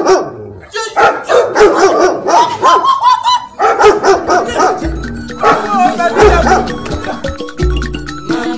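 A dog barking repeatedly in short, loud barks over upbeat background music with a deep beat.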